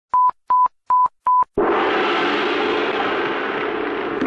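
Four short, identical high electronic beeps in quick succession, like a countdown tone. About one and a half seconds in, a steady rushing noise with a low drone starts abruptly, the opening of a film soundtrack.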